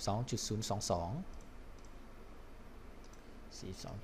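A few faint computer mouse clicks and keyboard keystrokes as a number is entered into a spreadsheet, between spoken words.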